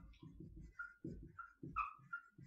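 Dry-erase marker writing on a whiteboard: scratchy strokes with about four short, high squeaks as the words are written.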